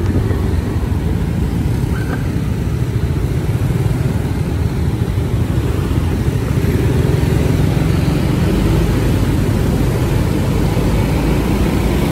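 Motorcycle engine running steadily at riding speed, heard from the pillion seat, with road and wind noise and the hum of surrounding traffic.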